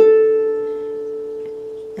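A single harp string, the A above middle C, plucked once with the thumb and left ringing, fading slowly.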